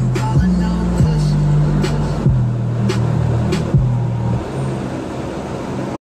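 Music with a heavy bass line and a steady beat, about three beats every two seconds, playing on a car stereo. The bass line drops out and the music gets quieter about four seconds in.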